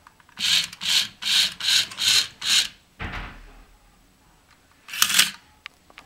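Dickie Toys wired remote-control convertible toy car working its retractable roof: six short, evenly spaced bursts of noise, about two a second, then a low thump and one more short burst near the end as the hardtop folds away.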